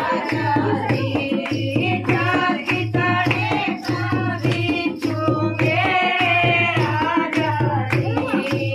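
Women singing a North Indian wedding folk song (bhat geet) together, over a dholak drum that keeps a steady repeating beat with sharp strokes.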